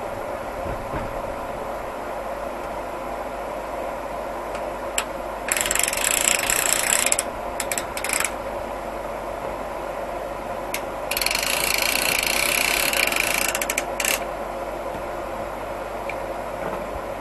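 Band sawmill's power unit running steadily with a constant hum. Two bursts of loud, high rushing noise cut in, one about five and a half seconds in lasting under two seconds, the other about eleven seconds in lasting about three seconds, with a few brief spurts after each.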